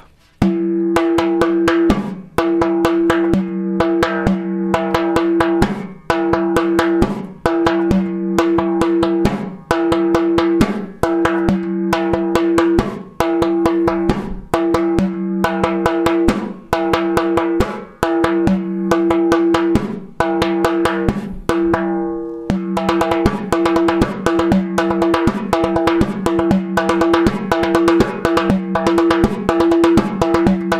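Frame drum played by hand in a three-three-two pattern of open bass tones and slaps over quick filler strokes. The drum's deep pitched ring is struck anew a little over once a second. The playing grows busier and brighter for the last third.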